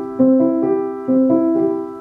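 Yamaha piano playing a C major chord rolled upward note by note (C, E, G), twice, about a second apart. It is the fingers-only way beginners play an arpeggio, without wrist rotation, which lacks a fluent sound.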